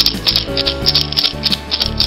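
Dried gourd rattle being shaken, the gourd's own loose seeds rattling inside in a quick even run of about five or six shakes a second, over background music.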